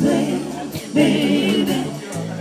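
Live band music: women singing together at microphones over steady bass notes and drums, with light cymbal strokes.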